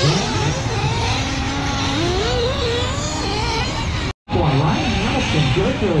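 Small combustion engines of large-scale RC race cars running on a dirt track, their pitch rising and falling as they rev and ease off. The sound cuts out briefly about four seconds in.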